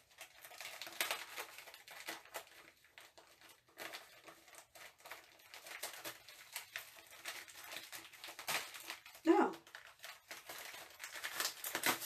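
A small paper seed packet being handled and pulled open by hand, with irregular crinkling and rustling of paper.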